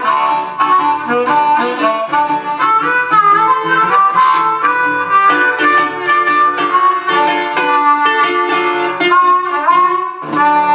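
Blues harmonica playing an instrumental break over a National resonator guitar picking the accompaniment, with a rising bend into a note near the end.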